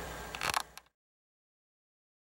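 Near silence: faint room tone with a short rustle about half a second in, then the sound cuts out to dead silence for the rest.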